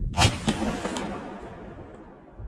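A single shotgun shot, one sharp crack followed by echoes from the forested hillside that die away over about a second and a half.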